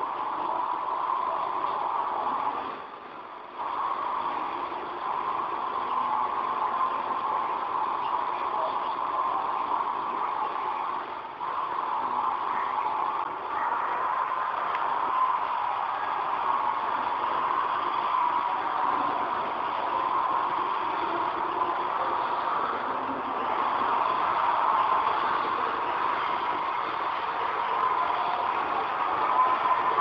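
Steady hiss and murmur of an old, worn video recording's soundtrack, most of it in the middle range, with a brief drop about three seconds in.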